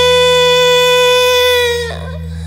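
A female rock vocalist holding one long wordless note, steady in pitch, which bends down and breaks off just before the end. A low steady hum from the band's amplification runs underneath.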